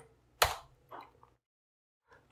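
A single computer keyboard keystroke, a sharp click about half a second in, followed by a much fainter click; the key press that enters the calculation.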